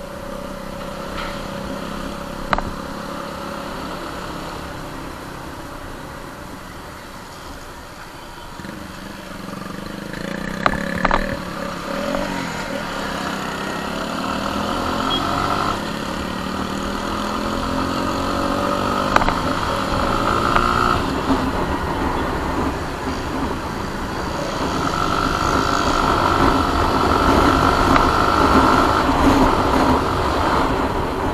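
Suzuki Gixxer SF motorcycle engine running under way, its pitch rising as it accelerates and then rising again later, with wind and road noise building with speed.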